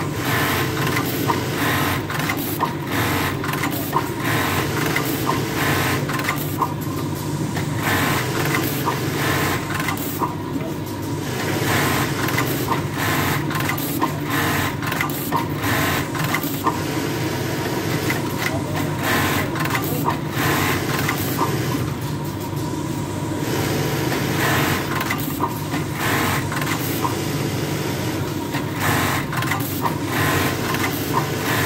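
Quris bowl-fed automatic button-sewing machine stitching buttons onto a garment: rapid machine stitching with clicks, broken by a few brief lulls, over a steady hum.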